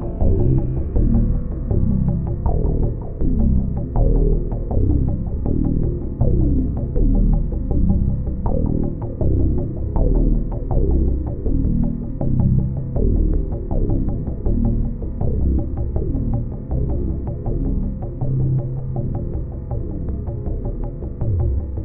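Dark ambient synthesizer improvisation from a Waldorf Blofeld and a Korg Wavestation SR: a low throbbing, humming drone that swells about every two seconds, with short falling-pitch tones over it roughly once a second.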